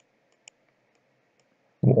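A few faint, sparse clicks from a computer pointing device as characters are handwritten on screen, followed near the end by a short spoken "uh".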